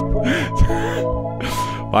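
Background music with steady held tones under a man's breathy laughter: two short, airy laughs, about half a second and a second and a half in.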